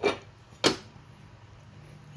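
A sharp metallic click from a riding-mower deck's mandrel pulley as it is turned by hand on its shaft, once, less than a second in, then a faint low hum. The pulley's bore is rounded out, so it spins freely on the shaft instead of gripping it.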